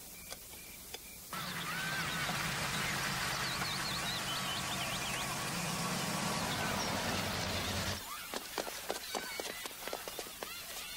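Outdoor ambience with birds chirping over a steady background, starting abruptly about a second in. About eight seconds in it changes to sparser short knocks and brief calls.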